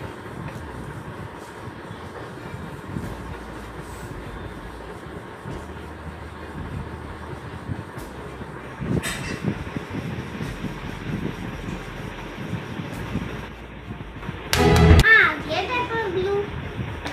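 Steady background noise with faint, indistinct low sounds. Near the end comes a loud, sudden burst, then a brief high voice that rises and falls.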